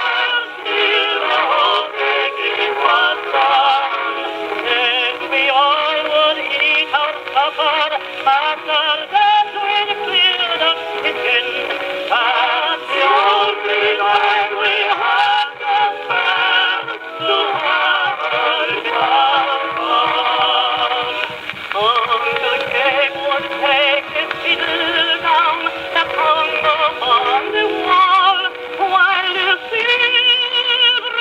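A 1915 Columbia Graphonola wind-up acoustic phonograph playing a 78 rpm vocal record: a singer with accompaniment, with a thin, tinny sound that has no deep bass and no high treble.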